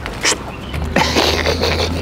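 Paper food wrapping rustling and crinkling as it is opened by hand: a short sharp rustle near the start, then a steadier crinkling from about a second in.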